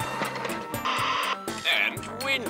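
Cartoon background music, with a half-second burst of radio static about a second in as a tabletop radio is switched on.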